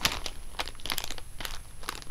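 Plastic toy packaging crinkling as it is handled, with irregular sharp crackles.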